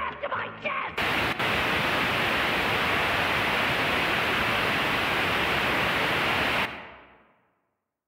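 Loud, steady analog TV static hiss that cuts in suddenly about a second in, replacing the cartoon soundtrack as the signal breaks up. Near the end it breaks off and trails away into silence.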